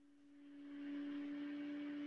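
A steady low hum with a soft hiss swelling in under it about half a second in.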